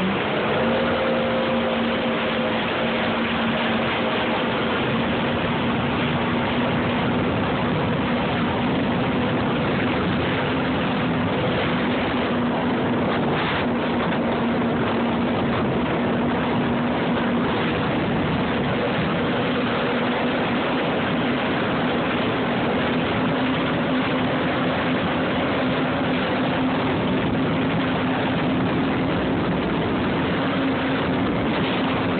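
Yamaha personal watercraft engine running at speed: a steady drone that steps up in pitch just after the start and then creeps slowly higher, over a constant rushing noise of wind and water.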